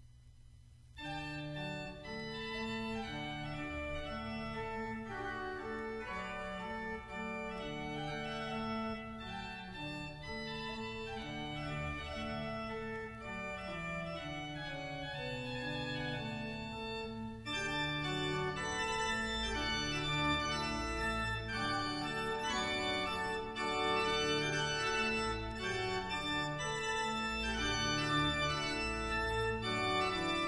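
Organ music in slow, held chords, starting about a second in, with a brief break a little past halfway.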